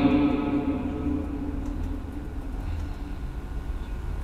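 The echo of a man's amplified voice dies away in a large reverberant church, leaving a steady low hum.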